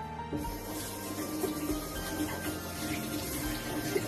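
A kitchen tap running into the sink, starting about a third of a second in, over background music.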